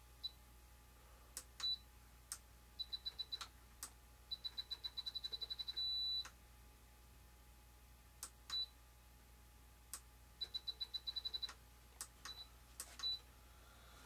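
Handheld RC transmitter beeping as its buttons are pressed to step the aileron sub-trim: single high-pitched beeps and fast runs of about nine beeps a second, with one longer beep about six seconds in. A few faint clicks come between them.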